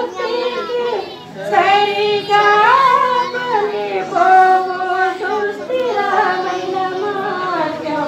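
A woman singing a slow melody into a microphone, with long held notes that slide from one pitch to the next.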